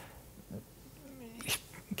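A short pause in a conversation: a faint, low voice sound sliding down in pitch, then a man starting to speak near the end.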